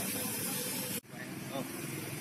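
Steady hiss of hot oil sizzling in a wok as food is fried and stirred with a long-handled spatula; the sound drops out for an instant about a second in, then the hiss carries on.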